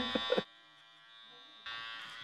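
A brief laugh, then a short quiet gap, then electric hair clippers start buzzing steadily about one and a half seconds in as they cut up the back of the neck.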